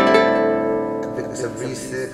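A chord strummed on a Yamaha guitarlele, a small six-string nylon-string guitar, rings on and slowly fades.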